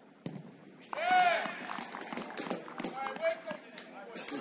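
A football is struck from a free kick with a short thud. About a second later come loud shouts and cheering from players as the goal goes in.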